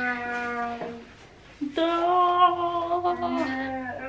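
Long drawn-out vocal notes, each held at a nearly steady pitch: a lower one first, then after a short pause a higher, louder one held for nearly two seconds.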